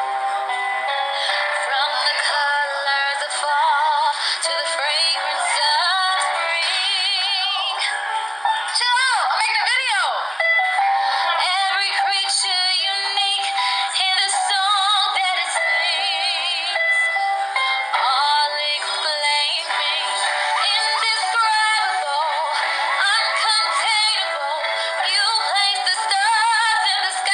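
A woman singing, holding notes with a wide vibrato; the sound is thin, with no bass.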